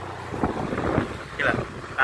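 Wind rushing over the microphone of a moving vehicle, with a low steady rumble and a few brief buffets in the first second.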